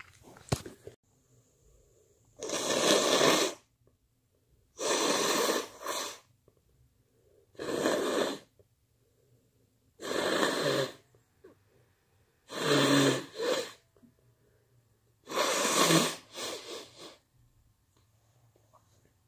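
A person with a head cold blowing their nose into a tissue: six long, noisy blows about every two and a half seconds, several followed by a shorter second blow.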